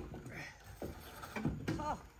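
Brief snatches of a man's voice calling out during the second half, over faint background noise.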